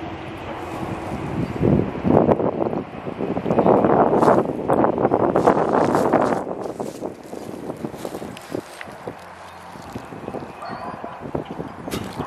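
Wind buffeting the microphone outdoors in rough gusts, strongest from about two to seven seconds in, then easing off.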